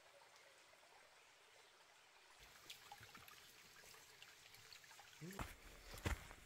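Near silence: a faint, even woodland hiss with a few faint ticks. Near the end, louder footsteps on the dirt trail begin.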